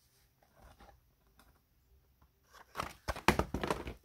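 Paper model figure crinkling and creaking as it is handled. Near the end comes a quick run of sharp papery crackles as the model's head works loose.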